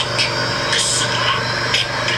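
Soundtrack of a subtitled Japanese anime battle scene: a character's line in Japanese over a steady hiss of battle sound effects, with a sharper burst of hiss just under a second in.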